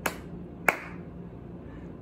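Two finger snaps about 0.7 s apart, the second louder.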